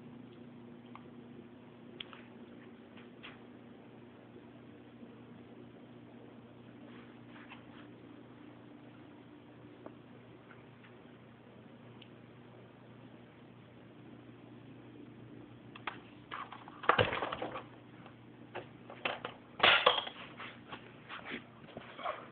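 Handling noise from a scale RC crane model: a few scattered clicks, then a burst of louder clicking and rattling of hard parts about 16 to 20 seconds in, over a faint steady hum.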